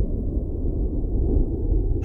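A deep, steady rumble with no higher sounds, the same low rumble bed that runs beneath the narration.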